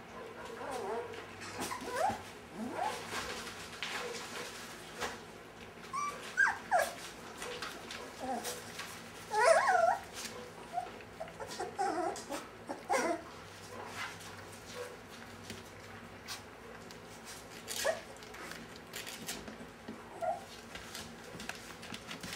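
Five-week-old Brittany puppies whining and yipping while playing: many short cries that bend up and down in pitch, scattered throughout and loudest about halfway through, with light clicks and scuffles between them.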